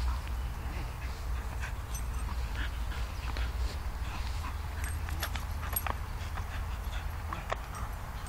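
Dog leaping at and tugging a tyre hung on a rope: a string of irregular knocks and clicks from the tyre and rope, with the dog's whimpers, over a low steady rumble.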